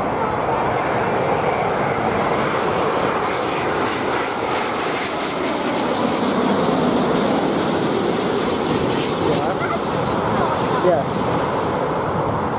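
British Airways Boeing 787 Dreamliner's Rolls-Royce Trent 1000 turbofans passing low overhead on final approach with the landing gear down. A steady jet noise whose high hiss builds from about four seconds in, peaks in the middle as the aircraft goes over, then eases.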